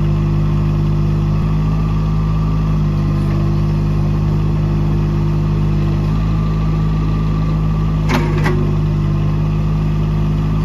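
Mini excavator's 31 HP Mitsubishi diesel engine running steadily while the boom and bucket are worked hydraulically, its note shifting slightly about six seconds in. Two sharp knocks just after eight seconds.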